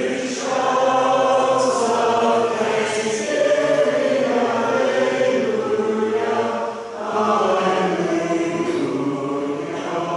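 A church congregation singing together in long, held notes, phrase after phrase, with a brief break between phrases about seven seconds in.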